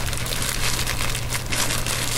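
Clear plastic disposable gloves and a small knotted plastic bag of hot sauce crinkling steadily as fingers pick at the bag's knot to untie it.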